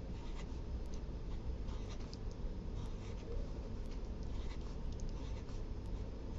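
Pen writing numbers on paper: a run of short, faint scratching strokes over a low steady room hum.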